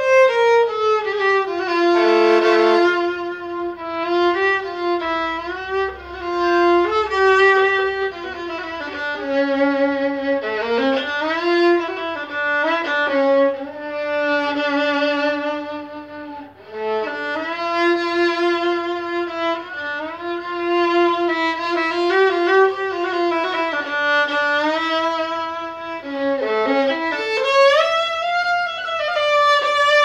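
Solo violin playing a Persian classical melody in the Esfahan mode: long bowed notes with wavering pitch, joined by slides and ornamental turns, with a brief break about sixteen seconds in.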